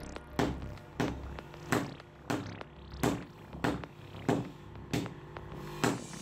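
Two sledgehammers taking turns striking a red-hot sword blade on an anvil, hand-forging it. The blows fall in a steady rhythm of about three every two seconds, each with a metallic ring after it.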